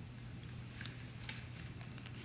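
Quiet studio room tone with a steady low hum and a few faint clicks.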